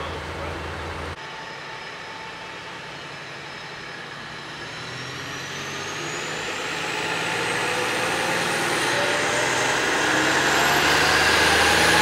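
Heavy vehicle engine and road noise growing steadily louder over about ten seconds, with a faint whine slowly rising in pitch and a low hum underneath. The sound changes abruptly about a second in.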